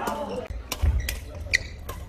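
A few sharp knocks and a low thud in a large hall with a wooden badminton court, as players move about between points. A short voice is heard near the start.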